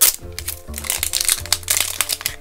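Thin clear plastic wrapping crinkling in irregular bursts as it is peeled off a small plastic toy can, over steady background music.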